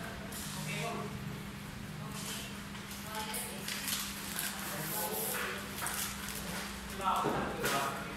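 Indistinct voices talking in the background over a steady hum, with a few light clicks.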